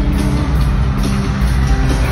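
Live band music in a concert arena, loud and bass-heavy, with held instrumental tones.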